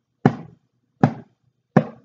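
A tall hand drum struck with the hand three times at an even, steady pace, about three-quarters of a second apart, counting out beats.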